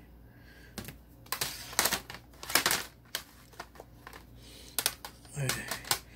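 Worn paper sleeves of old 7-inch vinyl extended-play records rustling and crinkling as they are handled, in a handful of short, sharp bursts.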